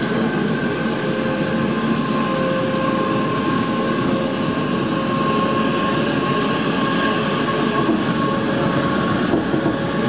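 Class 455 electric multiple unit running at speed, heard from inside the carriage: a steady rumble of wheels on rail with a few faint steady tones over it.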